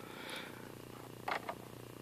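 A faint, steady low hum, with two brief soft sounds about a second and a half in.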